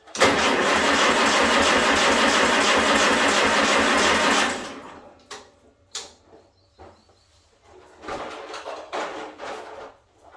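The starter motor of a Farmall A tractor cranks its four-cylinder engine steadily for about four and a half seconds, then lets off and winds down without the engine catching. The engine is out of gas.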